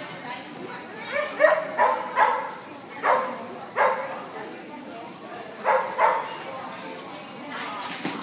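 A dog barking in short, separate barks: a quick run of them through the first few seconds, then a pair about six seconds in.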